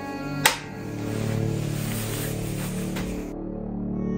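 Background music with long held tones, and one sharp click about half a second in.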